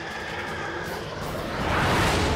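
A jet aircraft flying past, its rushing engine noise swelling to loudest near the end.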